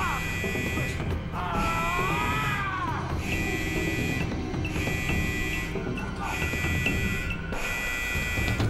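An alarm buzzer sounding in repeated pulses of about a second each, with short gaps between them, over background music.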